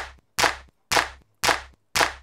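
A drum one-shot sample, a sharp snare-like hit with a low thump under it, played back over and over at about two hits a second, five identical hits each dying away quickly.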